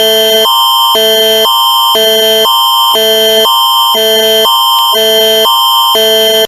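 Canadian Alert Ready emergency attention signal: two chords of electronic tones alternating about twice a second over a steady high tone, loud and unbroken.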